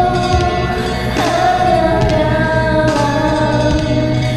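A woman sings karaoke over a backing track: two long held notes, the second sliding in about a second in and sustained.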